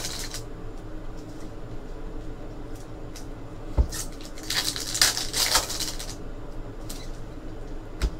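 Foil trading-card pack wrapper crinkling and cards being handled, in short rustling spells near the start and again about halfway through, with a few light taps.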